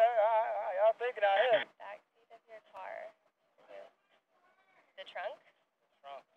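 A man laughing, his voice wavering rapidly up and down in pitch for about the first second and a half. After that come a few short, quieter bursts of voice.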